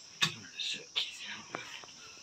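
Three sharp metallic clinks of a steel ladle knocking against a steel serving pot and bowl while curry is served, with quiet voices.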